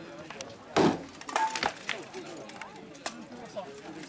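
A few sharp knocks and clinks, the loudest about a second in and another near the end, over people talking in the background.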